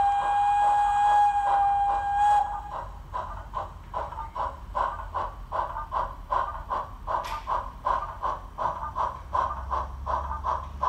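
Model steam locomotive sound decoder, a Zimo MX648R playing a Peckett 0-4-0 saddle tank sound file through a tiny 20 mm speaker. It gives a single steady whistle blast for about two and a half seconds, over a regular beat of exhaust chuffs as the loco runs along.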